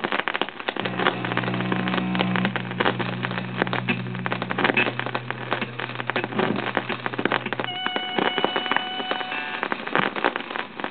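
Vinyl record playing on a turntable: heavy surface crackle and pops, with a low held drone coming in about a second in and higher held tones taking over near the end as the record's music starts.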